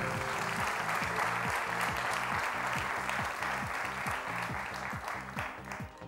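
Studio audience applauding over the quiz show's rhythmic music bed, greeting a correct answer; the applause thins out near the end.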